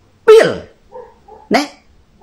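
Two short, loud vocal sounds about a second and a quarter apart, each starting sharply and falling in pitch.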